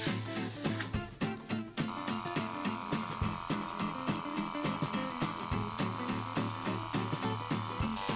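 Small electric air pump of a wrist blood pressure monitor running steadily from about two seconds in, inflating the cuff as the pressure climbs past 200 mmHg, higher than it should. Before that, the fabric cuff rubs as it is fitted around the wrist, and background music plays throughout.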